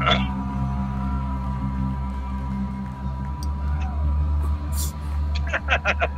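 Live jam-band concert recording playing, with sustained low bass notes under held tones; a short voice sounds near the end.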